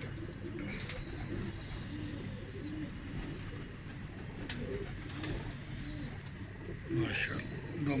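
Domestic pigeons cooing, a run of short, repeated low coos, with a brief louder sound about seven seconds in.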